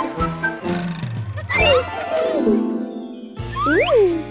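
Bright, jingly children's cartoon music, with a falling glide in pitch about halfway through and a quick rising glide near the end; the bass drops out briefly just before that rising glide.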